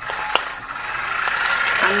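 Steady rustling handling noise close to the microphone, with a single sharp click about a third of a second in, as a lamp beside the camera is switched on.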